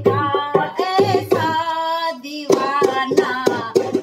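A woman singing a Hindi devotional bhajan, holding one long wavering note in the middle of the phrase, with a harmonium drone and a hand drum; the drumming pauses under the held note and comes back about two and a half seconds in.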